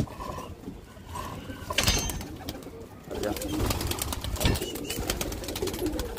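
Domestic pigeons cooing in a wire-mesh loft, with scattered sharp clicks and a couple of soft thumps as the birds are handled.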